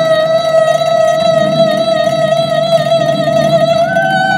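A woman singing one long held note with vibrato in an old Shanghai pop song, accompanied by grand piano and plucked pipa. The note steps slightly higher near the end.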